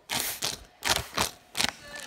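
Toothbrush scrubbing teeth: a series of short scratchy strokes, about six in two seconds, unevenly spaced.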